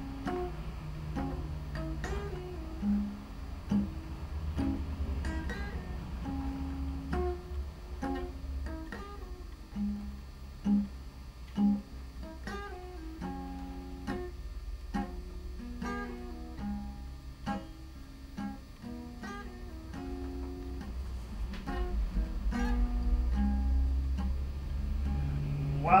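Acoustic guitar playing a blues instrumental passage, picked single notes and chords over a moving bass line. A man's singing voice comes in at the very end.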